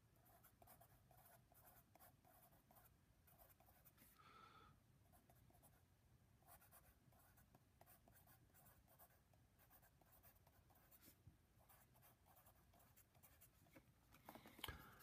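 Faint scratching of a pencil writing on paper, in quick runs of short strokes with brief pauses between words.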